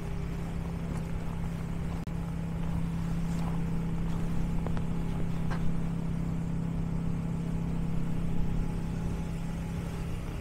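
An idling engine: a steady low hum that holds the same pitch throughout.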